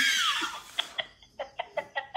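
A loud hissing shriek with a falling pitch dies away in the first half second, then a man's stifled laughter comes in quick short bursts, about four a second.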